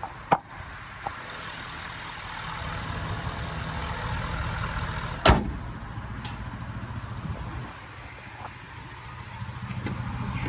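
Ford F-250 Super Duty pickup's engine idling steadily. A single sharp knock about five seconds in is the loudest sound, and there are a few lighter clicks near the start.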